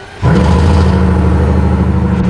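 Car engine starting about a quarter of a second in, then running at a loud, steady idle.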